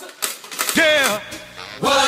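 A man's high, wavering vocal cry that slides downward in pitch for about half a second, after a few short clicks.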